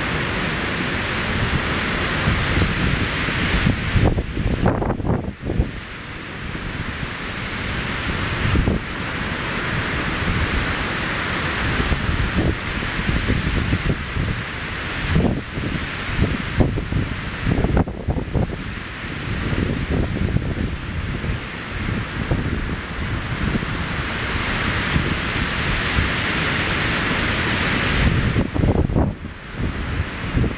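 Strong wind rushing through spruce treetops in gusts that swell and ease, with brief lulls, and wind buffeting the microphone with a low rumble.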